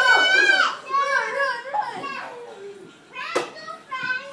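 Young children's voices squealing and shouting in play, a high, wavering squeal loudest in the first second, with one sharp knock about three and a half seconds in.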